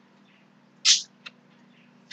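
Pause in a man's talk: a faint steady electrical hum, and about a second in a brief hissing breath from his mouth, followed by a small click.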